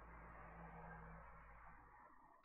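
Near silence: faint, steady room tone with a low hum.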